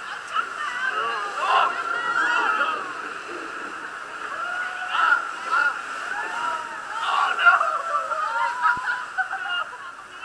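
Several raft riders' voices calling out and exclaiming over water sloshing and rushing around a river-rapids raft.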